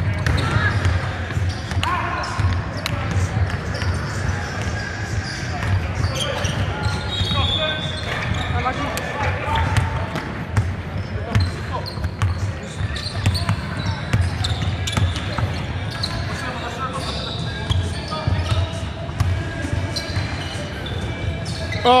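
Basketball bouncing on a hardwood gym court with short sharp knocks as players dribble, over a background of players' and spectators' voices, all echoing in a large sports hall.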